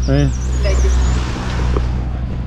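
A motor vehicle driving past close by: a low engine hum with road noise that swells, is loudest about a second in, and then eases off.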